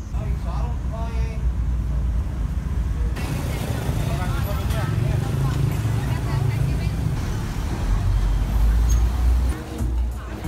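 City street traffic: a steady low rumble of passing vehicles, louder near the end, with voices of passers-by mixed in.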